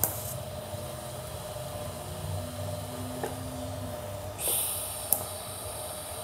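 TIG welding arc on stainless steel, run on DC at about 52 amps with argon shielding, tacking a star piece into a header collector: a faint steady hum and hiss. A short louder hiss comes about four and a half seconds in.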